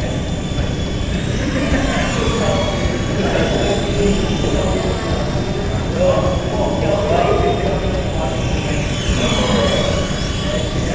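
Small electric RC helicopter (Esky Honey Bee) in flight: a steady high motor whine with rotor whir, echoing in a large hall, its tone sweeping slightly as it moves about.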